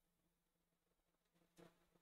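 Near silence: room tone with a faint steady hum and one soft click near the end.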